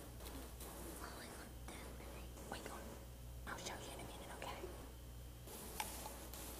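Faint whispering and hushed talk, with a few small clicks and rustles, over a steady low electrical hum.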